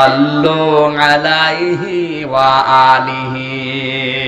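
A man's voice chanting in a melodic sing-song, holding long, steady notes. This is a preacher intoning devotional lines in the middle of his sermon.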